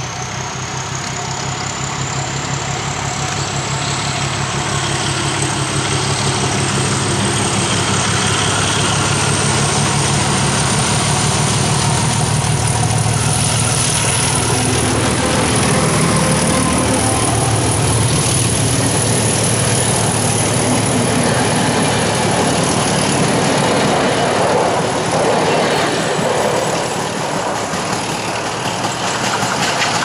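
ČD class 749 "Bardotka" diesel-electric locomotive 749 039-4 pulling away with a passenger train, its engine working under load with a high whine that rises steadily in pitch. The sound builds to its loudest as the locomotive passes, about halfway through, then gives way to the rumble of the coaches rolling by.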